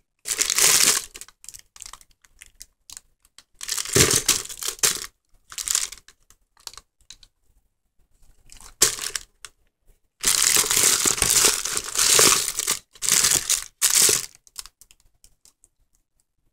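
Wrapped candy crinkling as a hand rummages through a plastic bucket of Halloween candy and handles the wrappers, in irregular bursts with short gaps, the longest from about ten to thirteen seconds in.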